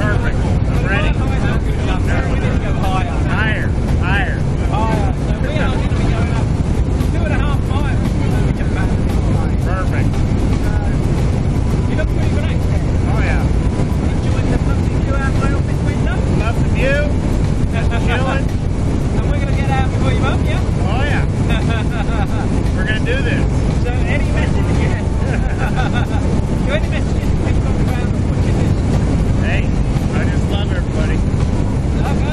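Steady loud drone of a small jump plane's engine and propeller heard inside the cabin in flight, with indistinct voices talking underneath it.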